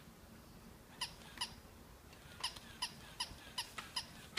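Remote-controlled toy dog barking: a run of short, high-pitched electronic yaps, about seven of them, starting about a second in.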